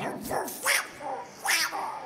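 A man's voice giving two loud, short shouted calls, about a second apart, with a softer one just before them.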